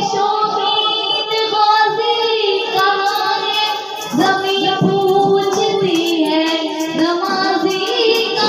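A child singing an Urdu devotional song about prostration (sajda) in long, held, ornamented notes: two sung phrases with a short breath about four seconds in.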